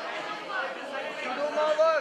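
Speech only: talking, with no other sound standing out.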